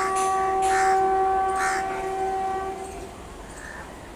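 WAP4 electric locomotive's air horn: one long steady blast that stops about three seconds in.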